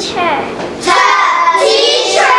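A young girl singing, holding one long note for about a second near the middle.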